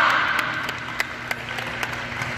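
Sparse applause with scattered single claps from a small crowd at the close of a national anthem, the last of the anthem's sound fading out at the start.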